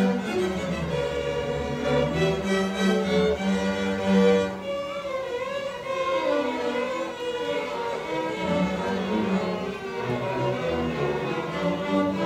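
Student string orchestra playing, violins carrying the melody over sustained low notes.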